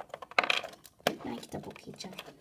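Small hard clicks and clatters of plastic toy figures and wooden blocks being handled on a hard floor, with two sharper taps about half a second and a second in.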